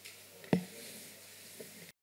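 A single sharp thump about half a second in, with a short low ring after it, over faint room noise and a low hum; a smaller click follows and the sound cuts off just before the end.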